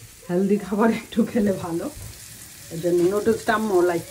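Vegetables sizzling as they stir-fry in a pan, heard faintly beneath a voice speaking in two stretches.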